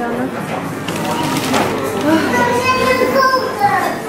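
Indistinct voices of people talking in a shop, among them a high-pitched voice.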